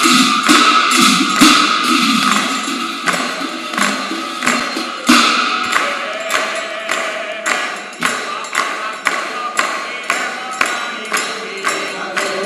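Congregation of devotees clapping hands in a steady rhythm, about two claps a second, accompanying chanted Assamese nam-prasanga (devotional name-chanting) in a large hall.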